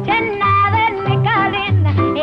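A woman singing a bouncy early-1950s pop song in a bright, wavering voice, backed by a small band with a bass note about twice a second.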